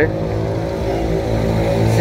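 A motor vehicle engine running steadily with a low, even drone.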